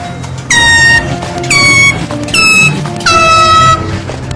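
Air horn blasted four times in quick succession, each blast about half a second long, loud and shrill, with a brief dip in pitch as each one starts. Background music plays underneath.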